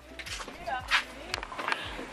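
Several sharp clicks and knocks from a locked door's handle and lock being worked, with faint voice sounds between them.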